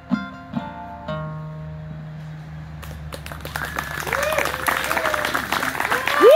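Acoustic guitar closing a song: a few last notes in the first second that ring out and fade. From about halfway, audience applause builds, with cheering voices, and grows louder toward the end.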